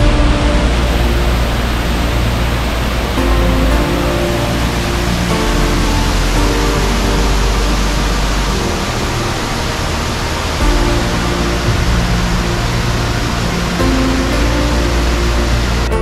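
Background music with held notes and a low bass, laid over the steady rush of a waterfall.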